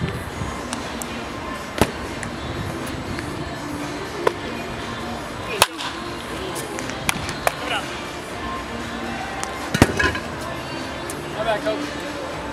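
Baseball bat hitting pitched balls in batting practice: sharp cracks about every four seconds, the loudest about halfway through, with lighter clicks between them.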